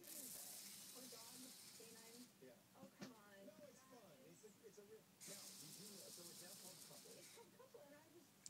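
Flip-dot display's electromagnetic dots flipping over at high speed, heard as two bursts of fast, hissing rattle, each about two seconds long: one at the start and one about five seconds in. Each burst is one full refresh of the display, driven by an Arduino Mega near the top of its speed range.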